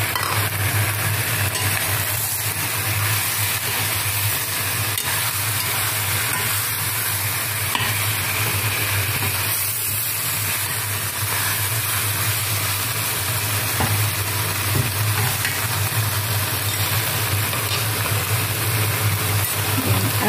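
Chicken and potato chunks frying with a steady sizzle in a pan of spice paste while a metal spoon stirs them, scraping now and then, over a steady low hum.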